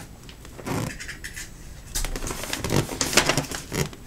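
Wrapping paper crinkling and rustling under the hands as it is pressed and taped around a gift box: an irregular run of short crackles, busier in the second half.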